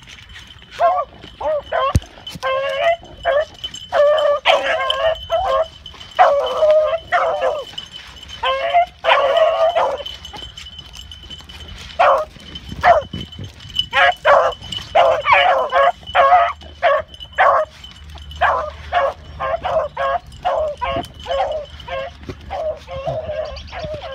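Pack of hunting beagles baying on a rabbit's trail, the voice of hounds running a scent. Short barks come in quick runs, with a brief lull around the middle.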